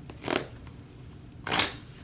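A deck of tarot cards being shuffled by hand: two short rustling bursts of cards sliding together, about a second apart, the second louder.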